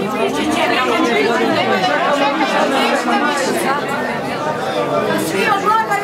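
Many people talking at once: the overlapping voices of a gathered crowd, steady and loud throughout.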